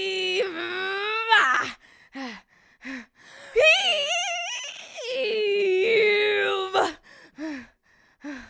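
A person's voice straining with effort, as if heaving up a heavy weight. There are two long, high, wavering strained cries of a few seconds each, with short grunts between them and after.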